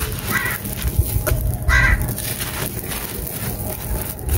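Hands crushing and crumbling dry blocks of stony red dirt, a steady gritty crunching with loose soil trickling down. A bird gives two short harsh calls in the background, about half a second and two seconds in.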